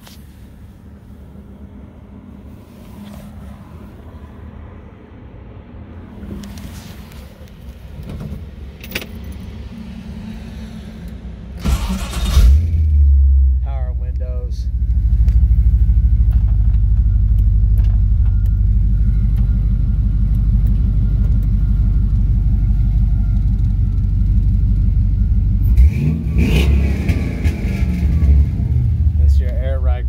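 Clicks and key handling, then about twelve seconds in the Camaro's LS2 V8 crate engine cranks and fires. It settles into a steady, even idle. Near the end it revs once and the pitch falls back to idle.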